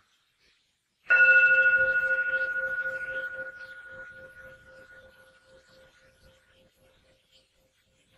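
A singing bowl struck once about a second in, ringing with a low tone and fainter higher overtones that die away over about five seconds, the low tone pulsing slightly as it fades.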